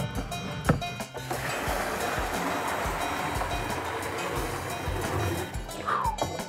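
Liquid splashing in a plastic barrel of mash, a steady watery rush from about a second and a half in until just before the end, under background music with a steady beat.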